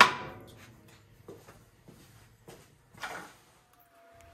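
A single sharp knock of the thick wooden blank set down on the bandsaw's steel table, ringing away over about a second, followed by a few faint handling clicks and a short soft rustle. A faint steady tone comes in near the end.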